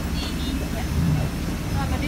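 Steady low rumble of an airliner's cabin at the boarding door, with brief indistinct voices of people nearby.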